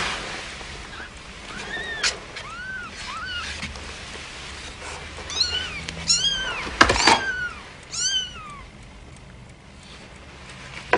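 A cat meowing over and over: about ten short, high meows, each rising then falling. There is a sharp knock about two seconds in and a louder thud near seven seconds.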